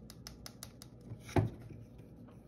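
Fingernails tapping the underside of a plastic paint palette, a quick even run of clicks at about six a second, to knock air bubbles out of freshly mixed paint. The tapping stops before a second in and is followed by one louder knock as the palette is set down on the table.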